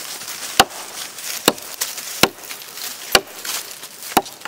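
Swamp Rat Chopweiler chopper knife chopping into a log: four sharp chops a little under a second apart, the blade biting notches into the wood.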